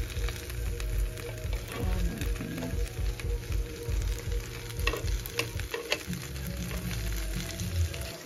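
Sauced ribs sizzling on the hot plate of an open electric contact grill, with scattered sharp crackles of popping fat. A steady low rumble runs underneath and drops away near the end.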